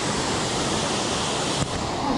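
Steady rush of a tall waterfall falling into a pool, with a short click near the end.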